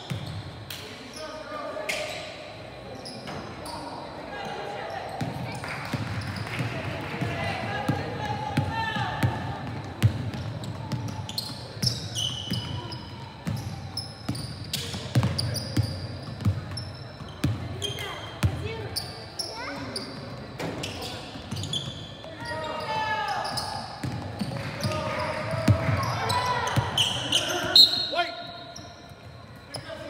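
A basketball bouncing on a hardwood gym court during play, with many sharp knocks amid indistinct players' and onlookers' voices, all echoing in the large hall.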